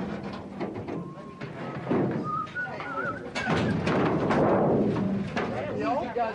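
Aluminum canoes knocking and scraping against a trailer rack as they are lifted off, with a longer rasping scrape in the second half and people's voices in the background.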